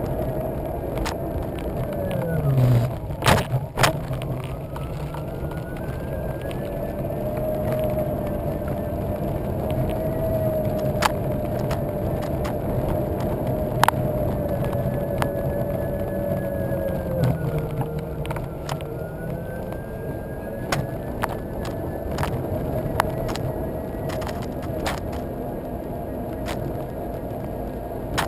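Solowheel electric unicycle's hub motor whining as it rides over asphalt, the pitch sliding down steeply about two seconds in, then rising again and holding high, dipping once more later, over a steady rumble of tyre and road noise. Sharp clicks and knocks throughout, loudest in a cluster a few seconds in.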